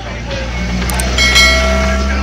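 Subscribe-button sound effect: a mouse click, then a bell chime that rings briefly, over a steady low hum.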